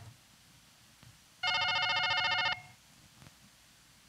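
A telephone rings once: a single electronic ring lasting about a second, the signal of an incoming call on the studio phone line.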